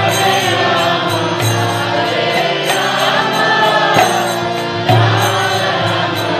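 Harmonium played with sustained reed chords and a recurring low bass note, accompanying a devotional chant sung over it.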